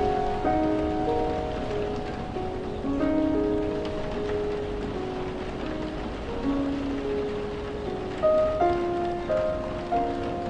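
Slow, gentle piano music over steady falling rain. The piano plays sustained notes and chords a few at a time, with a louder group of notes near the end.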